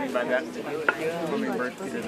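Voices of people talking nearby, with a single sharp click about a second in.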